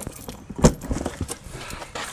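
Key worked in the locks of a motorhome's garage locker hatch: a sharp latch click about two thirds of a second in, then a few lighter clicks and knocks as the hatch comes open.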